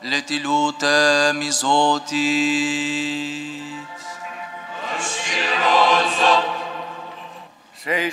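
Orthodox church chant: a sung line that bends up and down over a steady held drone for roughly the first half, then a long drawn-out melodic passage that fades out near the end.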